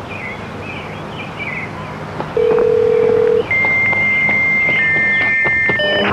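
Birds chirping, then long steady electronic tones: one low tone lasting about a second, followed by a higher held tone that is joined by a second, slightly lower one.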